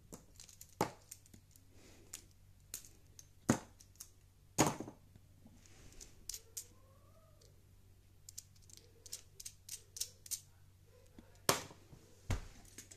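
Lego Technic plastic parts clicking as they are pulled apart by hand and set down on paper: irregular small clicks, with a few louder snaps about a third of the way in and near the end.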